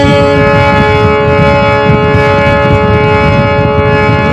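Damaged harmonium holding a chord of steady reed notes, one note changing to another shortly after the start, over a rough, noisy low rumble.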